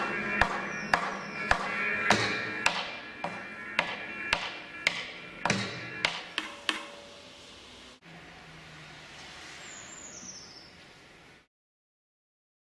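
Live band accompaniment: sharp percussive hits about twice a second over lingering guitar tones, fading away over about seven seconds. Then a faint background with a short high falling whistle, before the sound cuts off to silence.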